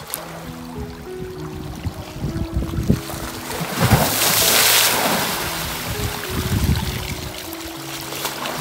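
Lake waves washing against and splashing up under a shoreline ice shelf, with one loud surge about four seconds in and a smaller wash a couple of seconds later. Soft background music with slow held notes plays underneath throughout.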